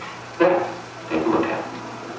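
A person's voice: two short voiced sounds, the first starting abruptly about half a second in, the second about a second in.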